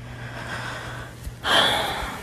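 A person's breath close to the microphone: a faint rush of air that swells into a sharp, audible intake of breath about a second and a half in.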